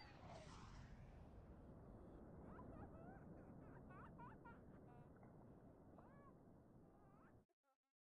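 Near silence: a faint low hiss with a faint swish near the start and a few faint chirps in the middle, cutting off to silence shortly before the end.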